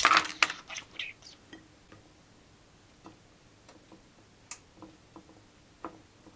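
A short clatter as bread is handled on a ceramic plate at the start, then a few scattered light clicks and taps.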